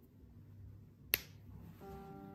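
A single sharp click a little past halfway through, then soft music with sustained notes comes in near the end.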